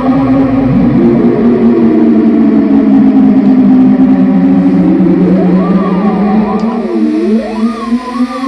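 Home-made theremin-style synthesizer built from an Axoloti board and Sharp infrared distance sensors, played by moving hands over the sensors. A gliding tone slides down over a steady low drone, holds, then swoops up and down again and again from about five seconds in.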